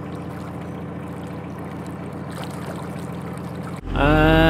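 Narrowboat engine running steadily at cruising speed, a constant low hum, with faint water noise along the hull. Just before the end the sound cuts abruptly to something much louder.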